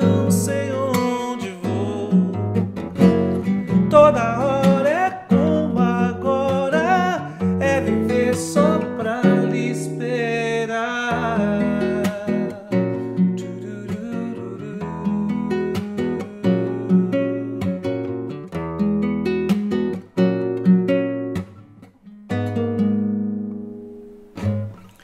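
Nylon-string classical guitar fingerpicked, chords and melody notes ringing together, with a wordless sung line over it in places. It dies away on a last chord near the end.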